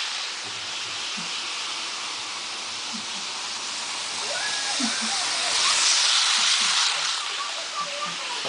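Electric model passenger train running fast on its track, a steady whirring hiss of motor and wheels that swells from about five and a half to seven seconds in as the train comes round close by, then eases off.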